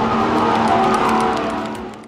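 Electric go-karts running on the ship's rooftop track, a loud steady motor hum with a dense racing din, fading out near the end.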